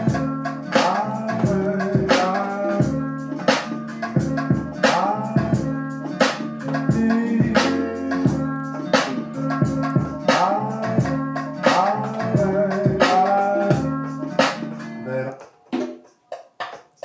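A hip-hop beat played from a drum-pad sampler through studio monitors: regular drum hits over a looped, pitched sample. It cuts off abruptly near the end.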